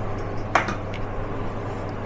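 Steady low electrical hum under quiet kitchen room tone, with one short light click about half a second in.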